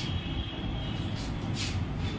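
Steady low background rumble with no speech, with two brief soft hisses, one at the start and one about one and a half seconds in.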